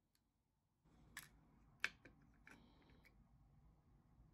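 Faint, sharp clicks of a circuit breaker's moulded plastic case being pried apart by hand, the sharpest just under two seconds in, followed by a few small ticks as the cover comes free.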